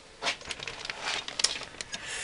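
Clear plastic parts bag being picked up and handled, crinkling with irregular small crackles and clicks.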